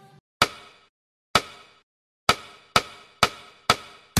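Six sharp percussive hits in the soundtrack, each dying away quickly, the gaps shrinking from about a second to about half a second, a build-up between music sections.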